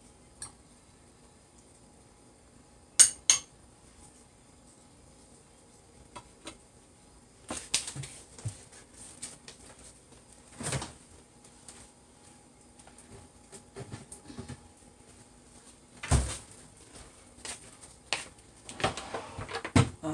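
Intermittent clinks and knocks of a metal spoon against a bowl and a plate being handled on a kitchen counter. The loudest are two sharp clicks about three seconds in and a heavier thump at about sixteen seconds, with a run of clatter near the end.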